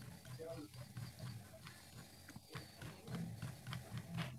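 Faint, irregular clicking, about three or four clicks a second, typical of a computer mouse's scroll wheel as a document is scrolled quickly. Underneath is a low, muffled murmur like distant speech.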